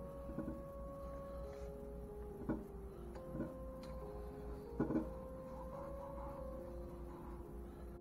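Soft background music with long held notes. A few short knocks and rustles from hands working blue painter's tape onto a wooden box come through it; the two loudest fall about a third and two thirds of the way through.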